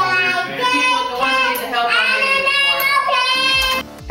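A little girl's high-pitched voice squealing and laughing in long drawn-out cries, cut off abruptly near the end.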